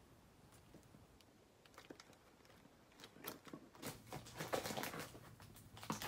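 Fingers picking and scratching at packing tape on a cardboard shipping box: a few faint clicks at first, then busier scratching and scraping from about three seconds in.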